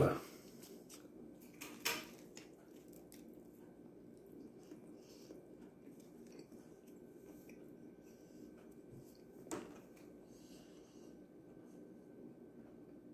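A quiet room with a faint steady high hum, broken by two short soft clicks, one about two seconds in and one near the end, as a fried chicken sandwich is handled in the hands.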